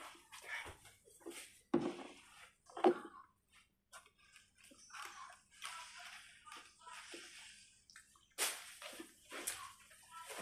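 A person eating close to the microphone: wet chewing and mouth sounds in irregular bursts, with a plastic fork working in a foam takeout container.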